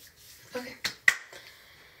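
Two sharp finger snaps about a quarter of a second apart, the second the louder.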